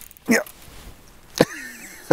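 A man's voice: a brief excited "yeah", then about a second and a half in a short sharp vocal burst, followed by a faint wavering tone as he starts to laugh.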